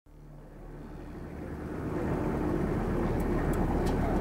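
Diesel locomotive hauling freight wagons, a low engine rumble and hum growing steadily louder, with a few sharp clacks of wheels on the rails in the last second.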